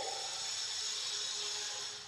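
A board duster wiping across a chalkboard: a steady rubbing hiss that fades out near the end.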